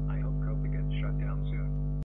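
Steady electrical mains hum, loud and unchanging, with faint indistinct speech over it.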